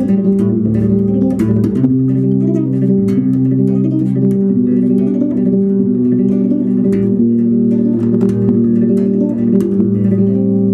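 Skjold six-string electric bass played with the fingers: plucked chords and overlapping notes ring together and change about every half second to a second in a flowing pattern.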